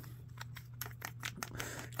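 Tail cap of an Olight Odin weapon light being screwed back onto the light body: a run of faint small clicks, thickest in the second half.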